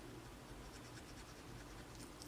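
Faint scratching of a fine-tip glue pen's tip being scribbled across cardstock in a series of light strokes.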